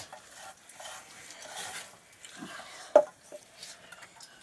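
Soft scraping and rustling of fingers and food in steel plates and bowls as children eat by hand, with one sharp metal clink about three seconds in.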